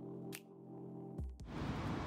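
Instrumental background beat: sustained synth chords with a couple of sparse drum hits. It cuts off near the end, giving way to steady outdoor background noise.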